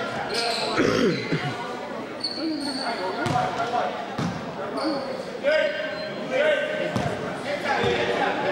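A basketball bouncing on a gym floor several times, with brief high sneaker squeaks and players' voices calling out in the hall.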